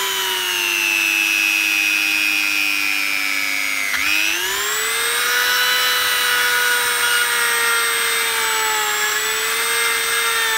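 Small handheld rotary tool running with a grinding bit against a wooden locket piece, a steady high motor whine. Its pitch sinks slowly for the first four seconds, breaks abruptly, then rises back and holds steady.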